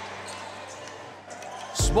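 Indoor basketball game sound: a low arena background of ball and play on the court, with the crowd. Loud music with heavy bass cuts in suddenly near the end.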